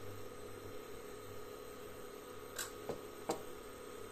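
Faint steady hum from a switched-on induction cooktop under a hot, empty kadhai, with a few light clicks a little past halfway.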